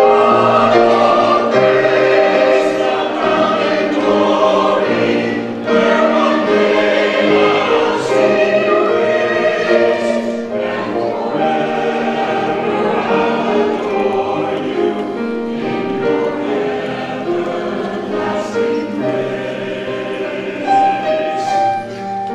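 Mixed-voice church choir singing a choral anthem in parts, with grand piano accompaniment.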